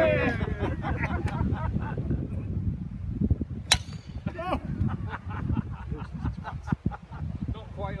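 A golf club strikes a ball off the tee about halfway through: one sharp crack with a brief ringing tail. Laughter fades out at the start, and wind rumbles on the microphone.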